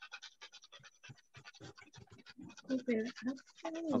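A rapid run of small dry clicks, about nine a second, thinning out after about two and a half seconds; a person's voice comes in near the end.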